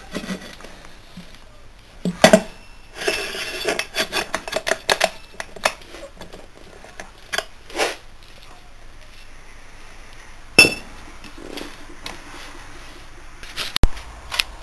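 An electric wheelchair motor-gearbox and its steel wheel flange being handled: irregular metallic clinks and knocks, with a cluster about three to five seconds in and a sharp knock about ten and a half seconds in.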